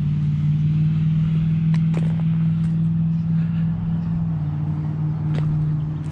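An engine running steadily at constant speed, a loud low drone with a slight shift in pitch about four seconds in.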